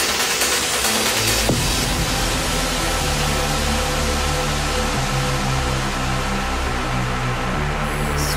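Electronic dance music from a DJ set over a club sound system. A beat with bright highs gives way about a second and a half in to a deep bass line that steps between notes, while the top end slowly fades out toward the end.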